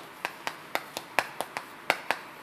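Chalk tapping on a blackboard while characters are written by hand: a quick, irregular series of sharp taps, about four a second.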